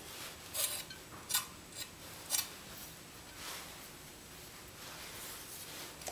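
Chef's knife blade scraping and tapping against a plate while gathering julienned garlic: three short strokes about a second apart, then fainter rubbing.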